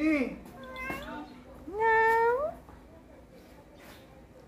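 Domestic tabby cat meowing: short calls near the start, then one long, loud meow about two seconds in that holds its pitch and rises at the end.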